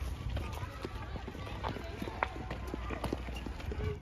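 Footsteps on a dirt path with irregular clicks and rattles from a pushed wheeled cart, over a steady low rumble.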